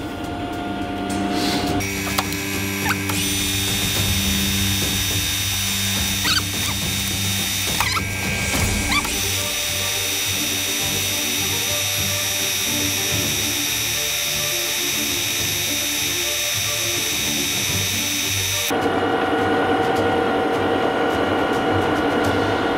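Metal lathe starting about two seconds in and running steadily while the tool turns the outside diameter of a rusty steel tube held in a three-jaw chuck. There is a steady machine whine with a high squeal from the cut, and the squeal drops away near the end while the lathe keeps running.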